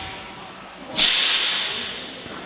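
A single sharp crack about a second in, followed by a hiss that dies away over about a second.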